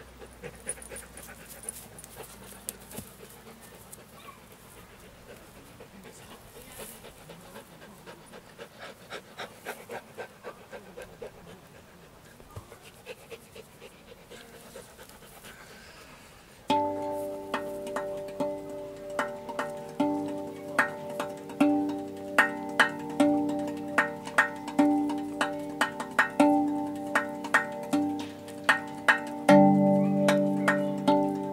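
Dog panting, faint. About seventeen seconds in, a RAV Vast steel tongue drum tuned to the G Pygmy scale starts, played with the hands: a steady run of struck notes, each ringing on long and overlapping the next.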